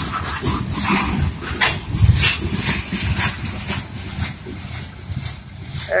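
Freight train's grain hopper cars rolling past close by: a low rumble with many short, irregular high squeals from the wheels on the rails.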